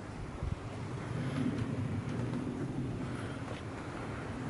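Wind rumbling steadily on the camera microphone, with a few faint scuffs.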